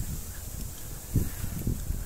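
Low wind rumble on a phone's microphone during a walk with a handheld gimbal, with two short low bumps a little past halfway.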